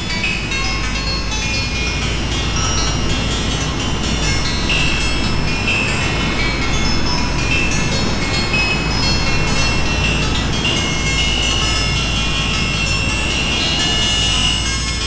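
Experimental electronic music from an EMS Synthi VCS3 analog synthesizer and computer. A dense, crackling noise texture runs over a steady deep drone, with thin high whistling tones coming in about five seconds in and again from about ten seconds.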